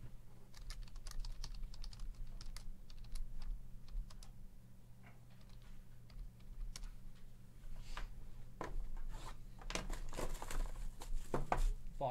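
A run of light, quick clicks like keys being typed during the first few seconds, then handling noise near the end: rustling and a scrape as a sealed cardboard hobby box is slid across the tabletop.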